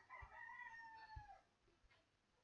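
Near silence with a faint, drawn-out animal call about a second long, falling slightly in pitch.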